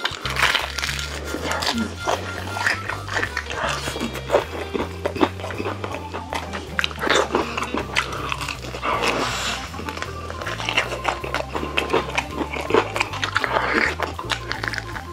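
Close-up crunching and chewing of crispy fried chicken, with repeated crackling bites, over background music.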